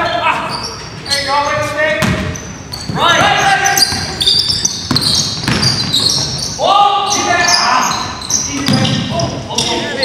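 Basketball game in a gymnasium: players shouting and calling out, with the basketball bouncing on the hardwood floor and a few sharp knocks, all echoing in the large hall.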